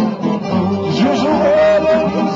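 Tamburica band playing live: plucked string instruments and upright bass, with a man singing.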